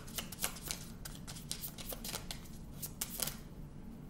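A deck of oracle cards being shuffled by hand: a quick run of light card clicks and riffles that dies away a little after three seconds in.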